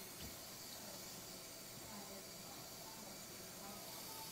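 Faint, steady hiss of operating-room background noise, with faint voices in the middle.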